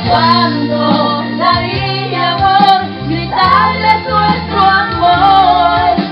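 A woman singing a song live into a microphone, over musical accompaniment with steady held bass notes.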